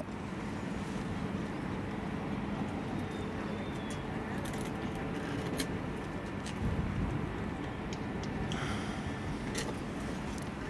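Steady outdoor background rumble at a football ground, with a few scattered sharp clicks and a brief low thump about seven seconds in.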